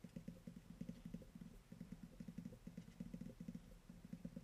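Stylus writing on a tablet screen: a quick, irregular run of faint, low taps from the handwriting strokes.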